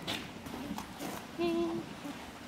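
A horse in a straw-bedded stall making faint rustles and a few small knocks as it feeds with its head in the bedding. A woman calls a short, soft 'Hey' to it about halfway through.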